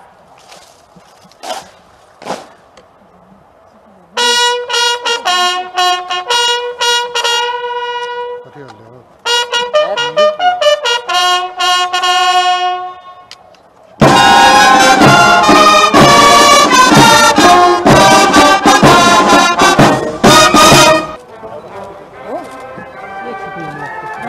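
A ceremonial bugle call on a single brass horn, in short and long separate notes. About 14 seconds in, a military brass band starts playing loudly, and it stops about 21 seconds in.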